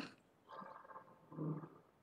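Two faint, short voice sounds from the lecturer in a pause between sentences: a brief one about half a second in and a low hum-like hesitation about a second and a half in.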